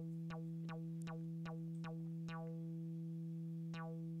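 Native Instruments Massive X software synthesizer holding one steady note while a looping envelope sweeps its filter cutoff. At each repeat the tone snaps bright and then dulls as the envelope's decay stage plays again and again, about two and a half times a second.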